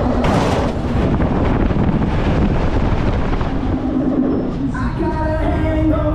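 Wind rushing over the microphone as the gondola of a Funtime freefall tower falls, starting just after the start. Fairground music from below comes through near the end.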